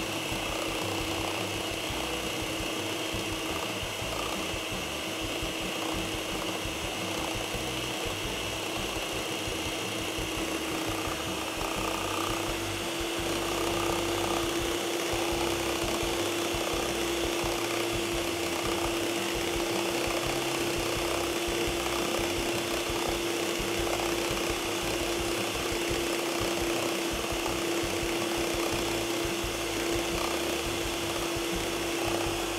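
Household stand mixer running steadily with a constant motor hum, its twin beaters whipping cream cheese and cream in a stainless steel bowl toward a semi-whipped, yogurt-like consistency. It gets a little louder about twelve seconds in.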